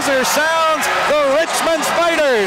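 Male sports commentator speaking.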